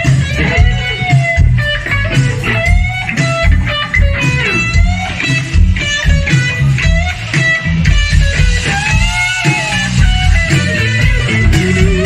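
A live blues-rock band playing: an electric guitar lead with bent, wavering notes over electric bass and drums.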